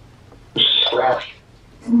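A short, garbled, voice-like fragment from a necrophonic spirit-box session, starting about half a second in: a held high tone running into a hoarse syllable. It is taken for the word 'slapped'.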